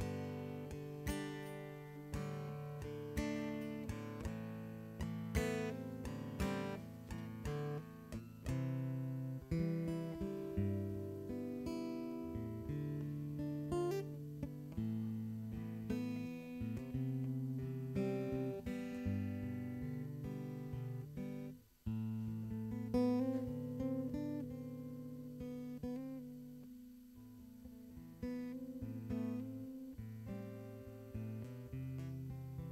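Instrumental acoustic guitar music: strummed and picked chords that change every second or two, with a brief break about two-thirds of the way through.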